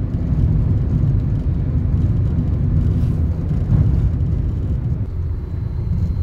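Car driving, heard from inside the cabin: a steady low rumble of engine and tyre noise on the concrete expressway surface.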